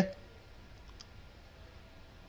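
A single faint computer-mouse click about a second in, over quiet room hiss.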